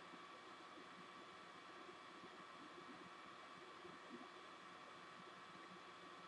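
Near silence: a steady faint hiss and hum of room tone.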